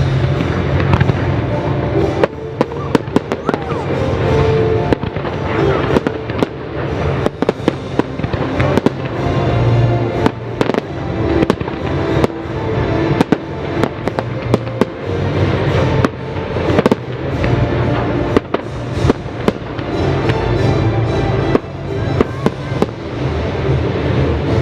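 Fireworks show: a rapid, dense string of sharp bangs and crackles from bursting shells, coming thick and fast from about two seconds in, over a continuous low rumble and the show's music.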